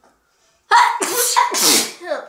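A young woman sneezing once, loudly, about two thirds of a second in: a short voiced intake-like onset breaking into a noisy, hissing burst that lasts about a second.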